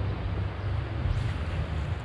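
Wind buffeting the camera's microphone, a steady low rumble, over an even hiss of moving river water.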